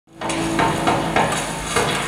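A few light clattering knocks and clicks over a faint steady hum, from a film's soundtrack playing through the speakers of a hall.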